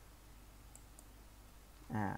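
Two faint, sharp clicks a quarter second apart: a computer mouse clicking to advance the presentation slide.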